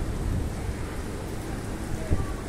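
Steady rain falling over rooftops, with a low rumble underneath.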